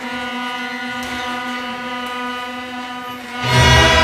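A student orchestra's strings (violins, cellos and double bass) holding a long, steady chord; about three and a half seconds in, a loud low chord swells in.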